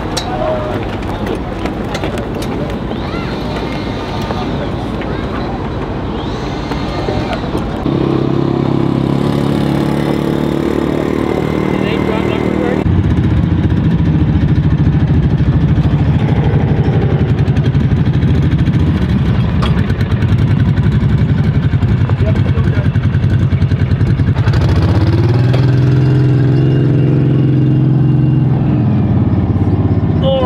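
Vehicle engines running at a steady idle, the note changing abruptly a few times, then dipping and rising in pitch near the end, with voices in the background.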